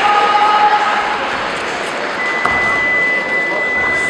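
Crowd noise in a large sports hall, with voices shouting from the stands during a karate bout. A steady high tone comes in about halfway through and holds to the end.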